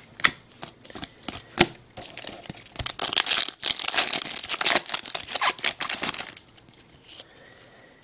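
A few clicks of trading cards being handled, then the foil wrapper of an Upper Deck hockey card pack torn open and crinkling for about three seconds midway, then quiet shuffling of the cards.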